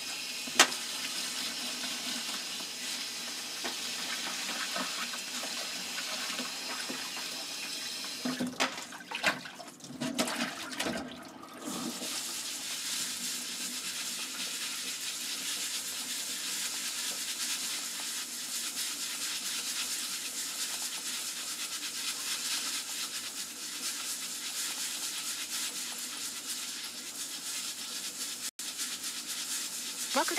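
Water running from a kitchen tap into a sink in a steady splashing stream. From about eight to twelve seconds in, the stream is broken up by a few knocks and splashes.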